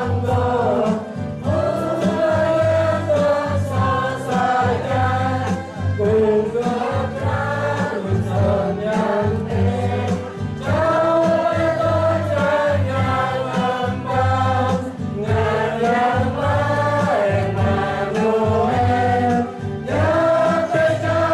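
Mixed choir of young men and women singing a hymn in unison, with electronic keyboard accompaniment holding sustained chords underneath.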